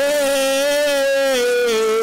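A man's voice singing one long held note into a microphone, with a slight waver, the pitch sinking a little near the end.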